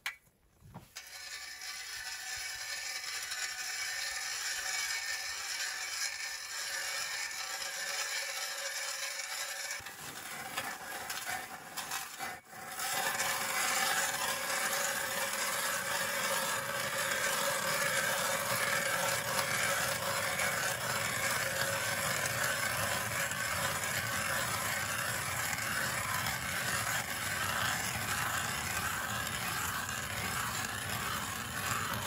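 Hand ice auger boring a hole through ice, its blades cutting and scraping steadily as it is turned. The sound grows louder and fuller about twelve seconds in.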